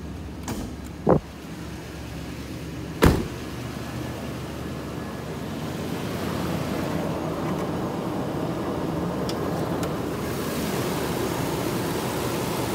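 A sharp click from the hood release lever being pulled about a second in, then a heavy thump about three seconds in. After that the 2014 Nissan Titan's 5.6-litre Endurance V8 idles steadily, growing louder over a couple of seconds as the hood comes up.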